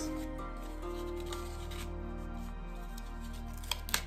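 Soft, steady background music with held notes. Near the end come two brief crinkles of paper being handled.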